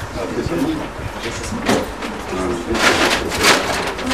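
Indistinct talking in a room, with rustling and handling noises that grow louder in the second half.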